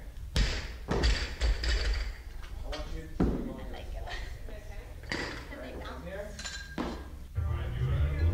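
Barbell loaded with rubber bumper plates dropped from overhead onto a rubber gym floor: a heavy thud about half a second in, then two smaller bounces a half-second apart. Further single thuds follow later, over people talking.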